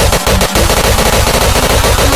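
Hardcore electronic dance track in a build-up: a loud, fast, evenly paced roll of hits over a sustained synth tone, with a faint rising sweep near the end.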